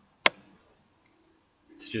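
A single sharp click of a computer mouse, about a quarter of a second in.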